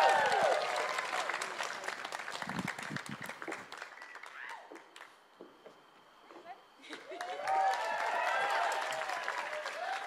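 Audience applauding with shouts and whoops. It dies away to near quiet about halfway through, then swells again with more shouting near the end.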